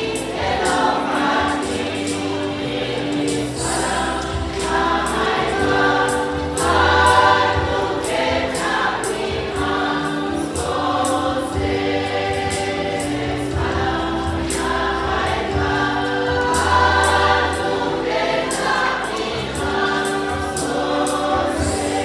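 Large mixed choir singing a hymn in several parts, the voices holding long chords together. A sharp, steady beat keeps time underneath, about twice a second.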